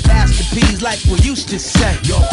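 Hip hop music: a rapped vocal over a beat with deep, pulsing bass.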